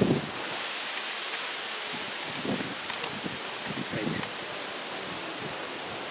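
A pause filled with a steady hiss of background noise, with a few faint, short low sounds between about two and a half and four seconds in.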